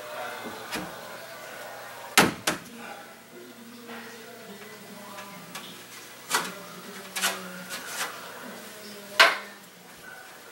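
Carpentry handling noise: a few sharp knocks and clatters of wood and tools being moved, about five louder ones spread through, with quieter rustling between.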